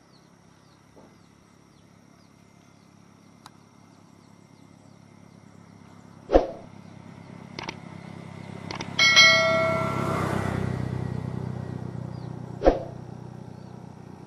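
A motorcycle approaches and passes, its engine growing louder to a peak a little past the middle and then fading. Two sharp clicks and a brief chime stand out over it, with a steady high insect tone and bird chirps underneath.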